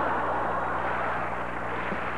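Studio audience laughing and applauding, a steady wash of crowd noise.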